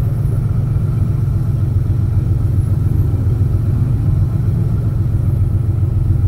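1988 Porsche 911 Carrera 3.2's air-cooled flat-six idling steadily, heard from inside the cabin as a constant low rumble.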